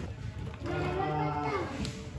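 A drawn-out, low hum-like voice sound lasting about a second, its pitch steady and then dipping near the end.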